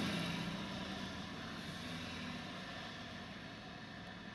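Faint, steady low hum inside a parked car's cabin, the sound of the vehicle idling, easing slightly quieter over the first second or two.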